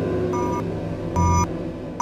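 Three short electronic beeps, each a bright stacked tone, repeating about every 0.8 s and getting louder, over a low held music drone.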